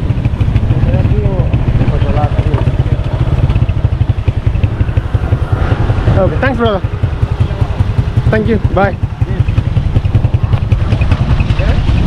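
Ride on a motorcycle: wind buffeting the microphone in a steady low rumble over the running engine, with short calls of a voice about halfway through.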